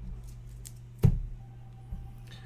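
Handling noise from a sleeved trading card held at a desk: a few faint plastic clicks, then one sharp knock with a low thud about a second in and a smaller click near the end, over a steady low hum.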